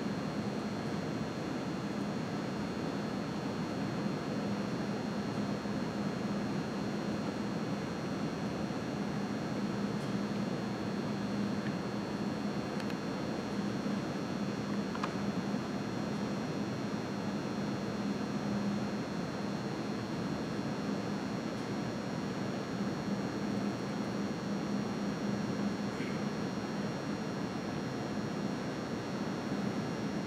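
Steady room noise: an even hiss with a constant low hum and no distinct events.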